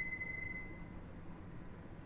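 Hohem iSteady M6 smartphone gimbal's power-on chime as it is switched back on: a single high electronic ding at the very start that rings out and fades over about a second.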